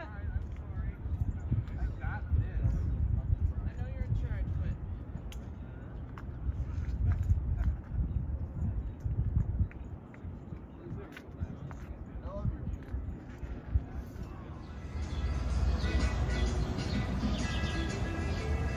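Wind buffeting the microphone in uneven gusts, with a few faint bird chirps. About fifteen seconds in, the sound cuts to a brighter scene with music.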